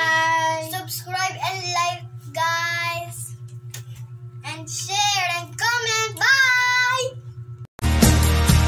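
Children singing and calling out in high sing-song voices, in short phrases with pauses, over a steady low hum. The sound cuts out suddenly near the end.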